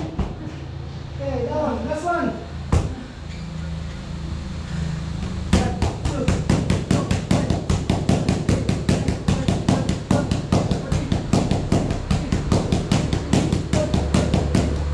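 Boxing gloves striking focus mitts. After a brief voice and a single sharp smack, a fast, even flurry of punches starts about five seconds in, at roughly four to five hits a second.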